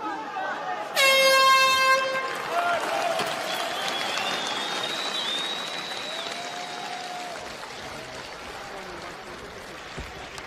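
End-of-round horn sounding one steady blast of about a second, marking the end of the round. It is followed by arena crowd noise that slowly fades.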